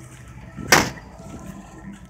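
A single sharp knock about three quarters of a second in, over a low steady hum.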